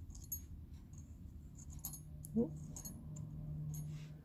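A few light clicks and clinks of small cast silver pieces being picked up and set down on a steel bench block. A steady low hum comes in partway through.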